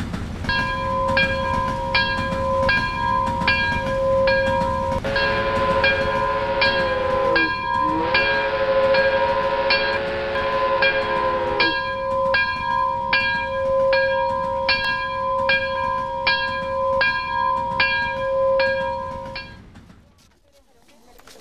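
Train sound effect: a rumbling train with a bell ringing rapidly and evenly, about two to three strikes a second. A train horn sounds for about seven seconds from roughly a quarter of the way in, its pitch dipping once midway.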